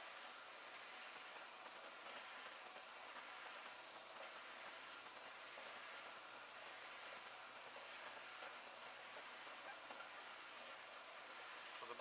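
Faint, steady running of a slider bed belt conveyor: the belt sliding over the bed and round the end pulley, with a few faint ticks.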